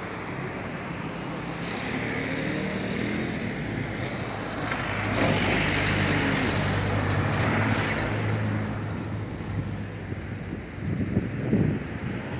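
Road vehicle noise heard from a moving car: a steady low engine hum with road noise, swelling louder for a few seconds in the middle and easing toward the end.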